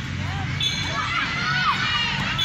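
Several children shouting and calling out over one another as they play football, their high-pitched voices overlapping, with a held high call about half a second in.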